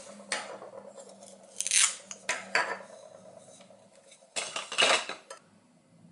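Toy play-food pieces handled on a wooden cutting board: a handful of short scraping, clattering bursts at uneven intervals, the loudest cluster near the end.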